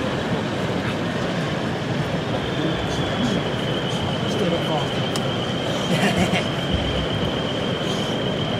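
OO gauge model train, a long rake of open wagons, running along curved track. A thin, steady high whine starts about three seconds in and holds, heard over the chatter of an exhibition hall crowd.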